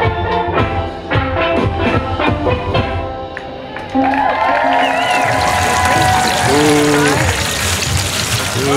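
Steel pan band playing a tune of struck, ringing notes that stops about four seconds in. Then a steady sizzle of fries in a deep fryer's hot oil, with people talking over it.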